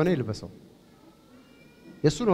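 A person's voice: a short, wavering vocal sound in the first half-second, then quiet with a few faint, thin high tones.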